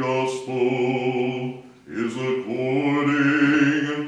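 A deacon chanting a liturgical text on one held pitch, in a low male voice, in two long phrases with a short break about two seconds in.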